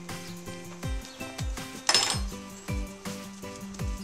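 Hip-hop instrumental background music: deep kick drums under a steady low bass note, with one sharp noisy hit about halfway through.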